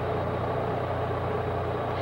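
An engine running steadily at idle, a low even hum with no change in speed.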